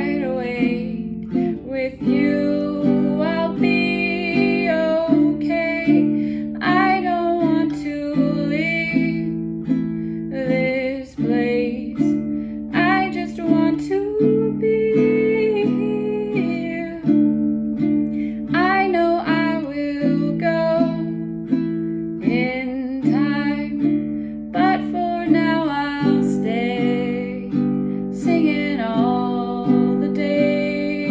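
Baritone ukulele strumming chords while a woman sings a slow original song over it.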